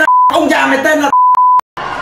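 Broadcast censor bleep cutting over a rapper's vocal twice: a short beep at the start and a longer one of about half a second just past the middle, with the rapping voice heard between them.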